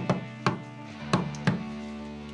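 Knuckles knocking on a panelled wooden front door: about four raps in two pairs, over soft background music.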